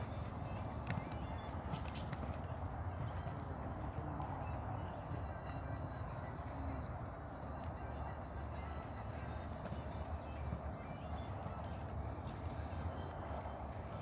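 A horse cantering on an arena's sand footing, its hoofbeats set against a steady low rumble of outdoor background noise.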